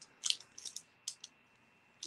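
A few short, faint crinkles and clicks of snack packaging being handled, in small clusters about a quarter second, two-thirds of a second and just over a second in.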